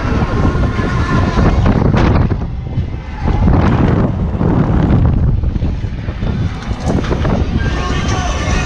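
Heavy wind buffeting on a GoPro's microphone as the arm of a KMG Mixer fairground ride swings it through the air, surging and easing in waves every couple of seconds.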